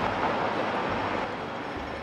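Road traffic on a busy city street: a vehicle passing close by, its noise loudest at the start and fading over about a second and a half, over a steady low traffic hum.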